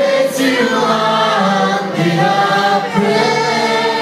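Worship song sung by a group of voices over instrumental accompaniment, the voices holding long notes.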